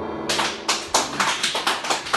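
Small club audience applauding: sharp, separate hand claps, several a second, starting about a quarter second in as the band's final chord fades out.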